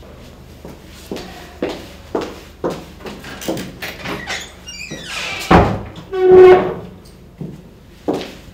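Footsteps across a room, then a wooden office door is pushed shut, with a sharp knock and a loud squeak about five and a half to six and a half seconds in.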